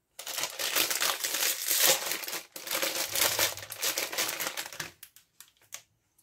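Crinkly plastic wrapper of a Brita Maxtra filter cartridge being opened and pulled off by hand. The crackling lasts about five seconds with a short break near the middle, then a few faint crackles near the end.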